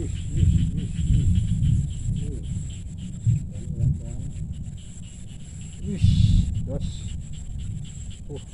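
Uneven low rumbling gusts, strongest near the start and again about six seconds in, typical of wind buffeting an outdoor microphone. A man makes short grunts and murmurs over it, and a steady high insect drone runs underneath.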